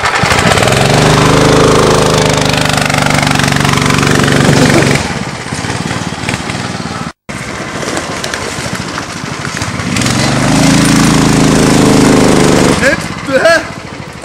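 Small engine of an off-road go-kart buggy under throttle, its note climbing in pitch as it speeds up, then falling away about five seconds in. It builds and climbs again from about ten seconds in.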